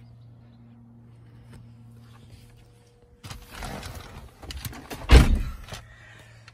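Rustling and a few clicks as someone climbs in, then a single heavy thunk about five seconds in: the door of a BMW 1 Series coupe being shut.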